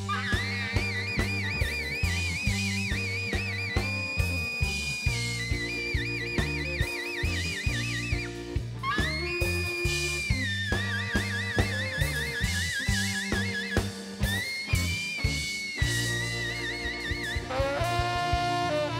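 Live blues band playing: steady drums and bass under a lead line of long, high, wavering notes with upward bends.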